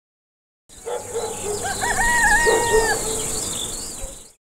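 A rooster crowing once, a long call with a rising start, over a steady high insect buzz and scattered bird chirps; the sound cuts in suddenly just under a second in.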